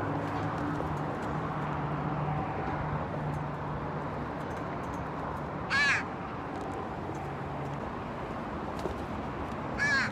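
A pet crow gives a single short caw about six seconds in and starts another right at the end, over a steady low hum.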